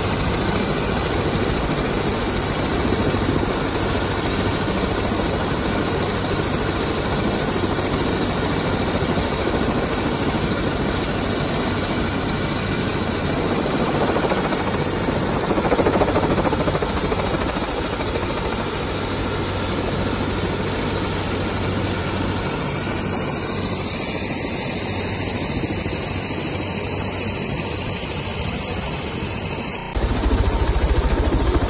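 Single-engine turbine helicopter (an AS350 Écureuil) running on the ground close by: a steady, loud noise of turbine whine and rotor, with rushing air on the microphone.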